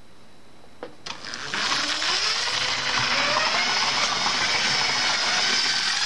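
A Lego train locomotive's small electric motor and gears whirring as it pulls away, after a short click about a second in; the whine rises in pitch as the train picks up speed, then runs steadily.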